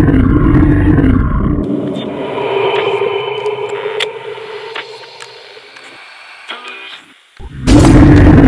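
A monster roar for a toy monster: a loud, deep roar in the first second and a half, then a long drawn-out growl fading away over several seconds, with another loud roar starting near the end.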